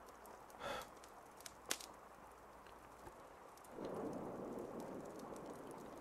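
A pause in close-miked speech: a faint brief breathy sound, a small sharp mouth click, then a soft drawn-out breath for the last two seconds.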